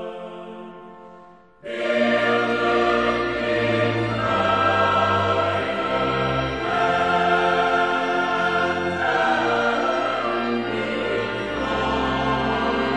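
Choir singing a sacred piece with instrumental accompaniment. A held chord fades away, then about a second and a half in the full choir and accompaniment come in loudly together, with sustained chords over a deep bass line.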